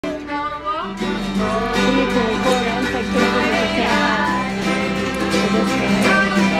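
Live country-style music from a small string group: guitars playing with a voice singing along, over a held low note that comes in about a second in.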